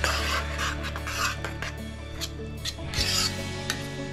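Steel spoon scraping against an iron kadai while stirring thick potato curry gravy, in a few rasping strokes.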